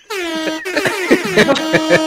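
Air horn sound effect sounding for about two seconds, its pitch dropping slightly at the start, with music under it. It is a celebration cue for a correct trivia answer.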